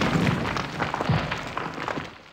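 Crumbling-stone sound effect for an animated logo: rubble rumbling and clattering with many small sharp cracks, dying away near the end.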